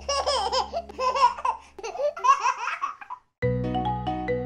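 Baby laughing in several bursts of giggles over a fading held chord. After a brief silence near the end, a new cheerful music intro starts with short, evenly spaced pitched notes.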